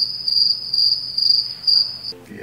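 Cricket chirping sound effect, a steady high trill pulsing about three times a second: the comic 'crickets' gag for an awkward silence when nobody has an answer.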